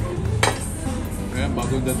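White ceramic plates and cutlery clinking against each other on a table as a plate of food is set down, with a sharp clink about half a second in and a few lighter knocks near the end.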